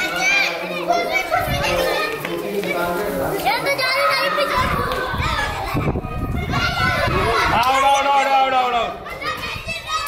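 A group of children shouting and calling out to one another as they play kabaddi, their high voices overlapping without a break.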